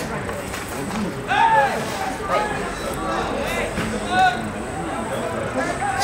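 Shouted calls from voices across an open sports field: several short shouts, the loudest about a second and a half in, over a steady background noise.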